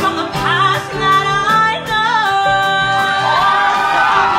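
A woman singing a musical theatre song into a microphone, holding long notes with vibrato, backed by a live band with drums keeping a steady beat.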